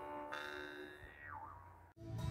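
Jaw harps played together: a twanging drone with a high overtone that slides downward about a second in, dying away near the end.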